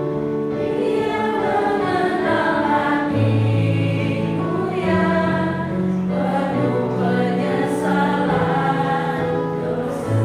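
A small group of mostly women's voices singing an Indonesian Christian hymn together, with an electronic keyboard holding sustained bass notes underneath.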